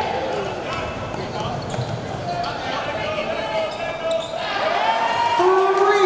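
Basketball dribbled on a hardwood gym floor during play, amid players' and spectators' voices echoing in a large hall, with a louder call or shout near the end.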